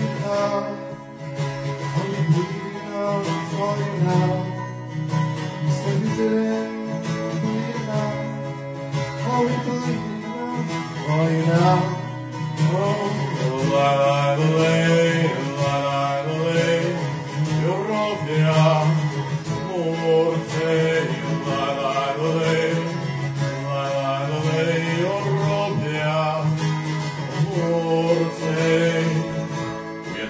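Acoustic guitar strummed and picked in a live song, with a man's voice singing over it from about a third of the way in.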